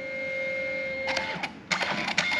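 Canon Selphy Square dye-sublimation photo printer feeding the finished print out of its slot after the colour and protective-coating passes. Its small motor runs steadily, then a quick run of clicks comes in the second half.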